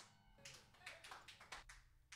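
Near silence between songs, with a handful of faint, irregular hand claps.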